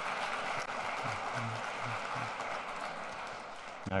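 Audience applauding: steady clapping from a large crowd that eases off slightly toward the end.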